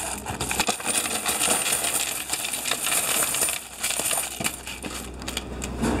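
A tubful of loose mixed coins (pennies, nickels, dimes and quarters) being poured into the intake tray of a coin-counting machine: a dense, continuous jingling clatter of many coins landing on each other, easing briefly partway through.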